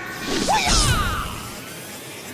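Channel logo intro sound effect: a whoosh with a low hit just under a second in, over music, then tailing off.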